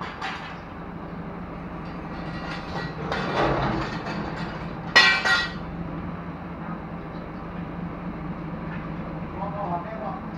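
Steady low hum of a truck-mounted crane's engine running, with a loud metallic clang about five seconds in that rings briefly as the hoisted steel machine section knocks against metal.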